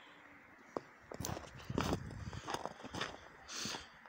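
Footsteps in snow, a few steps a second, starting about a second in.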